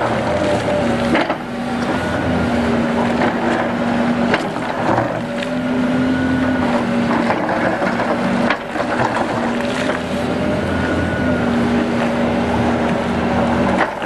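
Sumitomo SH300 excavator's diesel engine and hydraulics working under load, with a steady hydraulic note that comes and goes every second or two as the boom and bucket move. Gravel crunches and scrapes under the bucket as it levels the ground.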